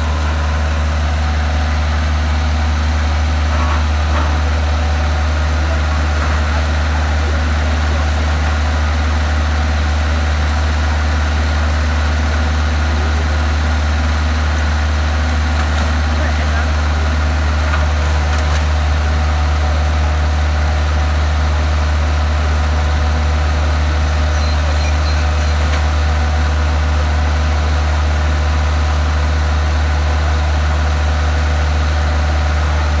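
CASE excavator's diesel engine running at a steady, unchanging pitch, a deep constant drone.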